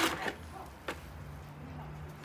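Wet long-fibre sphagnum moss being grabbed and pulled out of a plastic pot: a short rustling scrunch at the start and a single light click about a second in.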